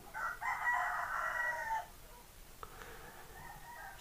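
A rooster crowing faintly: one long crow for most of the first two seconds, then a fainter call.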